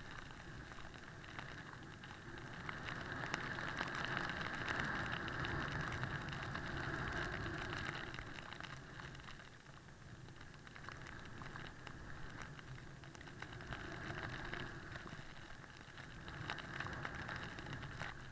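Snowboard riding through deep powder snow: a rushing hiss of the board and snow spray that swells and fades, with wind buffeting the camera microphone and light pattering of snow on the camera.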